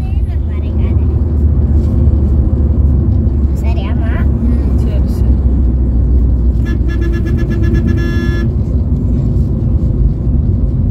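Steady low road and engine rumble inside a Maruti Suzuki Ciaz driving at highway speed. A vehicle horn sounds for about a second and a half, about seven seconds in.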